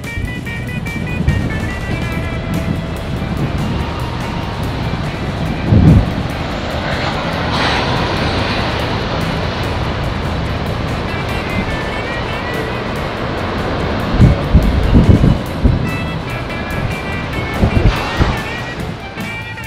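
Wind rushing over the microphone with a steady hiss and several heavy buffeting gusts, about a third of the way in and again near the end, over the wash of surf breaking on a rocky shore. Guitar music sits faintly underneath and comes back more clearly near the end.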